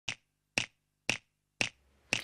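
Four finger snaps, evenly spaced about two a second, counting in the tempo of the song's opening.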